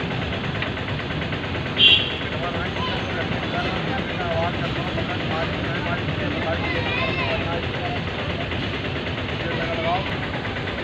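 Goods train of covered freight wagons rolling past at a level crossing, a steady rolling noise of wheels on rail. A short, loud, high-pitched beep sounds about two seconds in, and faint voices are heard in the background.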